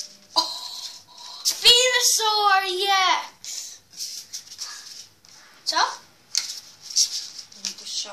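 A child's voice making a drawn-out, wavering sung or hummed sound for about a second and a half, starting about a second and a half in, with a short rising vocal sound near the end. Between and under it, the crinkling rustle of a trading card pack and cards being handled.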